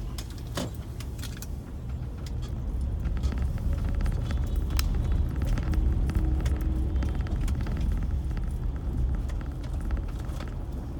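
Road noise of a vehicle riding along an unpaved street: a steady low rumble with many small rattles and clicks, growing louder in the middle.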